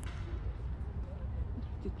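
Outdoor courtyard ambience: a steady low rumble with faint voices in the distance, and a brief click at the very start. Speech begins right at the end.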